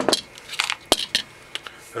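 AA batteries being taken out of the plastic battery compartment of a flash attachment: a quick run of sharp clicks and knocks as the batteries and plastic parts knock together.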